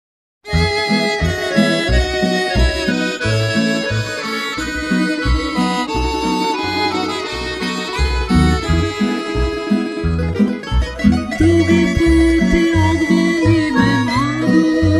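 Instrumental introduction by a Croatian folk band: plucked tamburicas, accordion and violin playing a lively melody over a regular bass pulse from a double bass. The music starts about half a second in, and no voice has come in yet.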